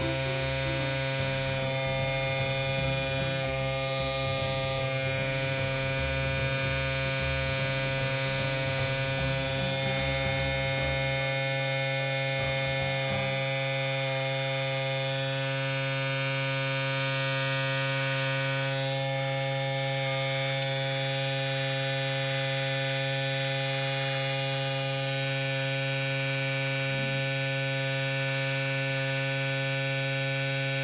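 Small airbrush compressor running with a steady electric hum, with a faint hiss of air as the airbrush sprays paint.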